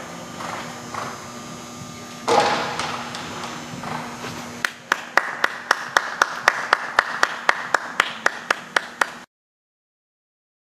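A horse's hoofbeats as it canters on arena footing, building in the second half to a run of sharp, evenly spaced clicks, about four a second. The sound cuts off suddenly near the end.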